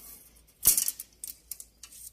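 Steel wire heddles clinking against each other and the metal shaft frame of a dobby loom as they are taken off the frame: one sharp metallic clatter about two-thirds of a second in, then a few fainter clicks.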